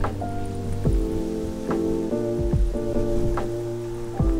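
Background music: a mellow instrumental track of sustained chords over a steady, slow kick-drum beat.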